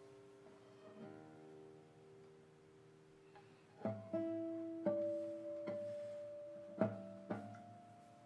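Solo nylon-string classical guitar playing a contemporary piece: a soft, sparse chord left ringing for the first few seconds, then from about four seconds in a series of louder plucked chords and notes, each struck sharply and left to ring and fade.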